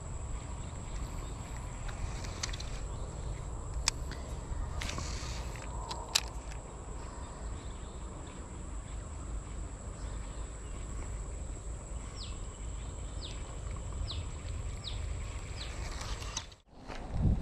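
Rural outdoor ambience: a steady high-pitched insect drone over a low rumble, with a couple of sharp clicks early on and a quick run of about six short falling bird chirps near the end.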